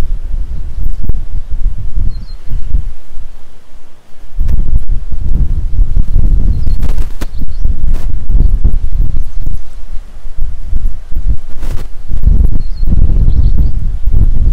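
Wind buffeting the camera's microphone in gusts: a loud, uneven low rumble that drops away briefly about four seconds in.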